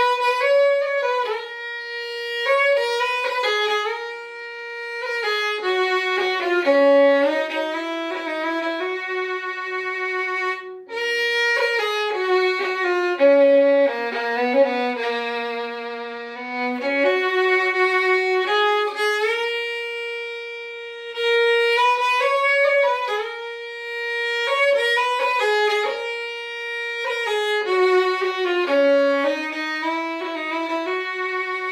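Solo fiddle, tuned a half-tone down, playing a slow Irish air: long held notes joined by quick ornaments, with a brief break between phrases about eleven seconds in.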